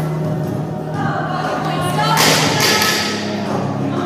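Background music with singing, and a single thud about two seconds in as the loaded barbell's bumper plates land on the rubber gym floor.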